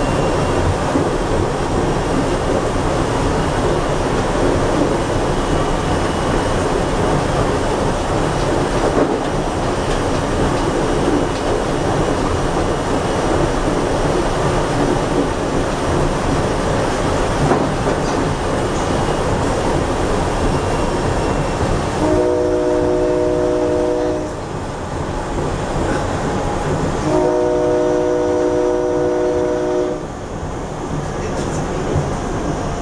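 SEPTA Silverliner V electric commuter railcar running at speed, a steady rumble of wheels on rail. Late on, the train's horn sounds twice as a chord of several notes: a blast of about two seconds, then a longer one of about three seconds.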